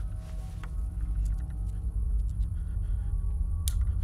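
Low, steady rumbling drone of a horror film's sound design, slowly growing louder, with faint scattered clicks and one sharp click near the end.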